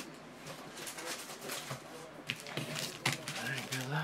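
Foil Topps Mini Chrome trading-card pack wrappers crinkling and crackling as they are picked up and handled, a series of short crackles.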